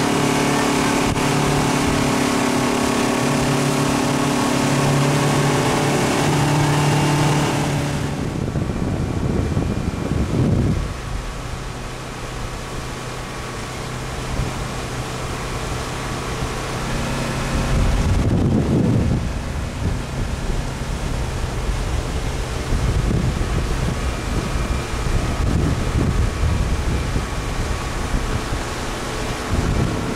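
Motorboat engine running steadily under way, mixed with rushing wake water and wind on the microphone. The engine hum is strongest for the first eight seconds; after abrupt changes about eight and eighteen seconds in, a lower steady hum sits under wind and water noise.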